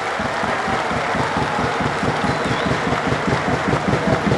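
Steady applause from many people clapping in a football stadium, as the players applaud the supporters at the end of the match.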